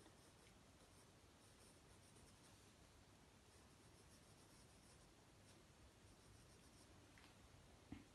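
Pencil sketching curves on sketchbook paper: faint, light scratching strokes, with a small click near the end.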